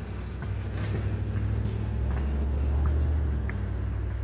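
Low engine rumble of a passing motor vehicle, swelling to its loudest about three seconds in and then easing off.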